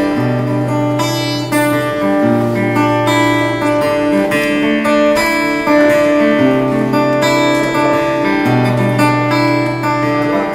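Solo acoustic guitar playing the opening chords of a song, the notes ringing, with the bass note changing about every two seconds.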